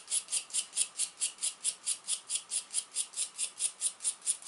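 Steel wire brush scrubbed back and forth over a copper-nickel Soviet coin, a fast, even scratching at about seven strokes a second. The scrubbing helps strip the green oxide loosened by electrolysis.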